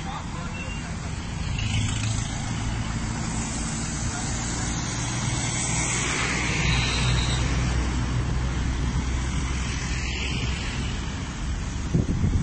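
Steady road traffic noise: vehicles on the highway with a continuous low engine hum.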